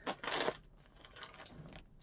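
Plastic mailer bag being slit open with a small bag cutter: a short rasping rip of plastic about the first half second, then faint crinkling as the bag is worked.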